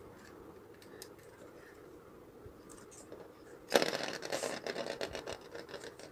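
A few faint handling clicks, then about four seconds in a small Lego spinning top is released onto a studded Lego baseplate and spins on it with a loud, fast rattling whir that carries on to the end.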